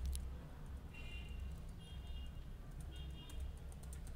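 Faint, scattered clicks of a computer keyboard being typed on, over a low steady hum.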